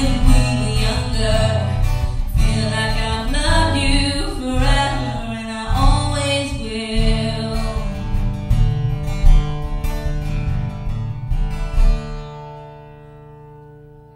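A song with a singer and acoustic guitar reaching its end. About twelve seconds in the playing stops and the last chord rings on and fades.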